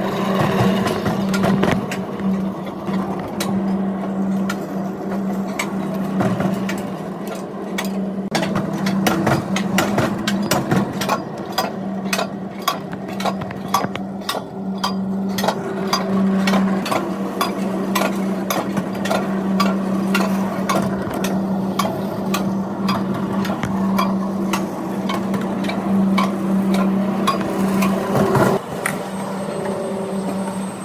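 Mountain coaster cart running along its steel rail, with a steady low hum and rapid, irregular clicking and rattling from the wheels and track.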